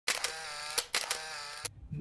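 Intro sound effect: two bright, buzzy pitched tones, each about two-thirds of a second long and each opening with a sharp click, separated by a short gap.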